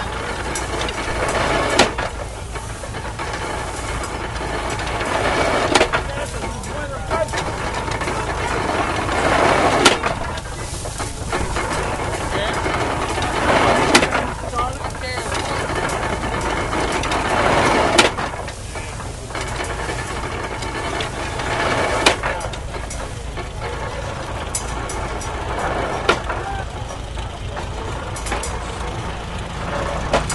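Belt-driven 1910 Columbia hay baler pressing hay, with a sharp knock about once every four seconds and rustling noise between the knocks. Under it runs the steady hum of the Farmall H tractor that drives it by belt.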